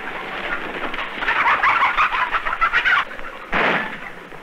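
Chickens clucking, a dense flurry of short calls in the middle, with a short loud burst of noise a little before the end.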